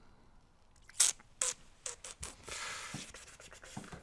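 Small metal parts being handled on a brass lock cylinder as the retaining clip is worked off: one sharp click about a second in, a few lighter clicks, then a short scrape.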